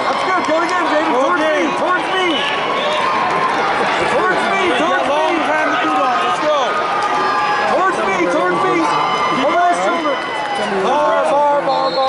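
Large arena crowd: many overlapping voices talking and shouting at once, at a steady level throughout.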